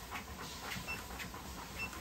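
Canary Mastiff panting steadily with its mouth open while walking on a dog treadmill, a few breaths a second, with a faint short high tone recurring about once a second.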